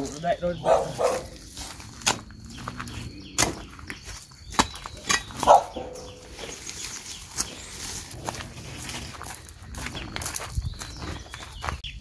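A long steel digging bar striking into soil and the fibrous base of a banana plant, digging out the banana corm: irregular sharp knocks and thuds, roughly one every second or two.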